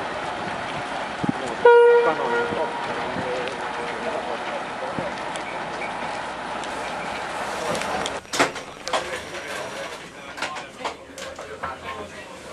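VR Dm7 'Lättähattu' diesel railcars running past with a steady rumble; about two seconds in, a single short horn toot rings out and fades. From about eight seconds on, the running sound gives way to a series of sharp clicks and knocks.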